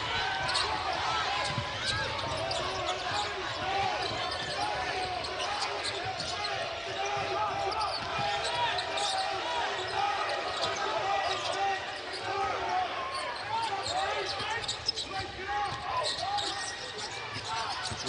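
Basketball game in play on a hardwood court: the ball being dribbled, with many short sneaker squeaks on the floor and arena chatter behind.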